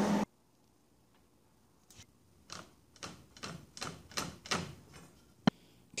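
A string of quick, light scratching taps, irregular at about two or three a second, from steel rods being marked and handled. One sharp click comes near the end.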